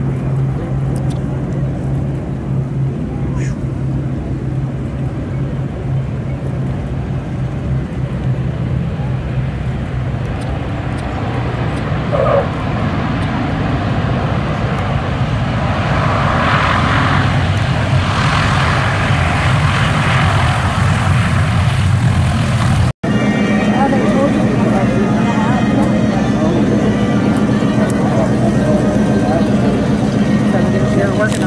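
Boeing B-29 Superfortress's four Wright R-3350 radial engines, a steady low drone as the bomber comes in to land, swelling into a louder rumble as it rolls out close by. After a sudden cut, the engines run on steadily at a higher hum on the ground.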